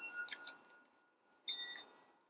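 Faint ringing chime tones: a note already ringing at the start fades out within half a second, and another chime rings out about a second and a half in.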